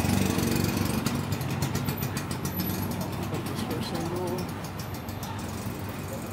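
Small motor scooter engine running close by, then fading as the scooter pulls away.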